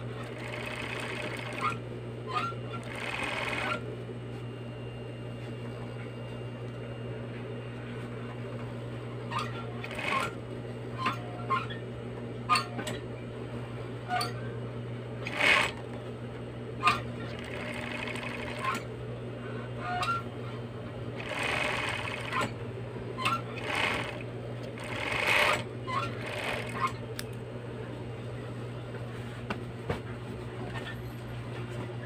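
Industrial sewing machine stitching jersey fabric: a steady motor hum runs throughout, and the needle runs in short bursts of about a second, several times, with sharp clicks between as the fabric is handled.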